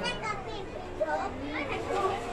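Children's voices talking and calling out, several high voices whose pitch rises and falls throughout.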